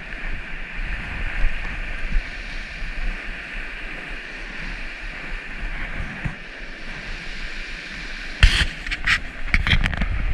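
Mountain creek running fast over a shallow riffle: a steady rushing hiss of water, with low wind rumble on the microphone. Near the end, a short burst of close, sharp rustles and knocks.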